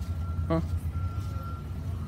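Steady low rumble of a motor vehicle engine running close by, with a faint thin high tone that comes and goes. A short spoken 'huh' about half a second in.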